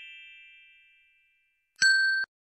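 Sound effects of an animated subscribe-and-bell graphic: a bright chime rings and fades away, then a second, sharper ding starts near the end.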